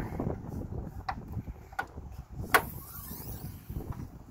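Car hood being opened: a couple of light clicks as the safety latch under the front edge of a Lexus SUV's hood is worked, then a sharp, loud metal clunk about two and a half seconds in as the hood comes free and is raised. Wind rumbles on the microphone underneath.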